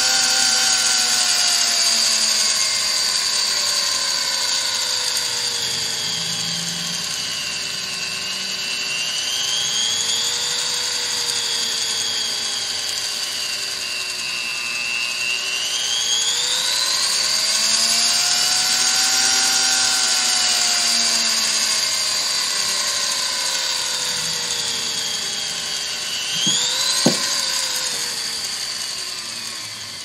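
Foredom-style flex shaft rotary tool's motor whining as its speed dial is turned, the pitch sinking and climbing back twice. Near the end the speed jumps up with a sharp tick, then the motor winds down. The uneven response, speeding up fast and then slowing as the dial turns, is typical of the fan speed control it runs through.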